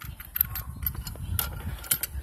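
Several sharp clicks and knocks of the hydraulic kit's metal hose coupler and steel attachments being handled against the plastic carrying case.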